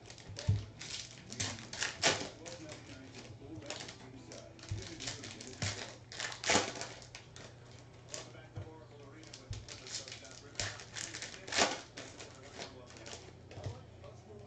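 Sports trading cards being handled and sorted by hand: irregular sharp clicks and taps as cards are flicked and set down on a stack, over a steady low hum.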